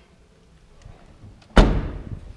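The trunk lid of a 2014 Chevrolet Cruze slammed shut once, about one and a half seconds in: a single loud thud that dies away quickly.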